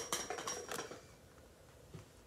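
Freshly ground coffee being tipped from a hand grinder's catch cup into an inverted AeroPress: a light, rattly run of small clicks and taps of the cup against the brewer during the first second, and one small knock near the end.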